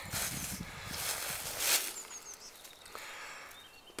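Footsteps rustling through dry leaves, grass and twigs in overgrown undergrowth, loudest in the first two seconds. A couple of faint, short, high bird chirps come in the quieter second half.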